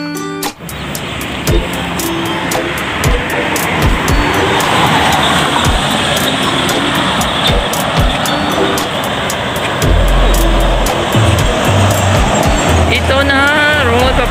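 Steady traffic noise from a highway, building up over the first second or two, under background music with a regular beat; a voice begins near the end.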